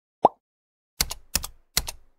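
A short pitched blip that rises in pitch, then three keystrokes on a computer keyboard about 0.4 s apart, each a quick double click.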